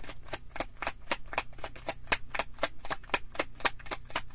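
A tarot deck shuffled by hand: a quick, even run of card clicks, about seven or eight a second, without a break.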